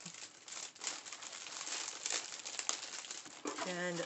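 Packaging crinkling and rustling as items are handled, a dense run of small crackles lasting about three and a half seconds. A woman's voice starts near the end.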